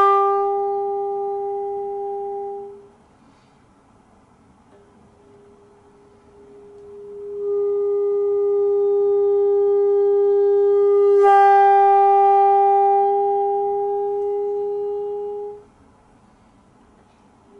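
Bassoon holding long notes on the same high pitch. The first note fades away, and after a short pause the note comes back very softly, swells and is held for about eight seconds, with a brief fresh attack partway through, before it stops.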